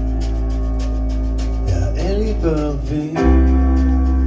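Live band of electric bass, piano and drums holding a chord over a sustained low bass note, with a melody line that bends up and down in the middle; just after three seconds a new, louder low bass note and chord come in.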